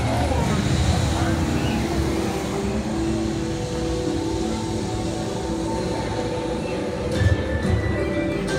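Steady city street noise: a continuous traffic rumble with a few held hums, with crowd voices fading out at the start and music with plucked notes coming in near the end.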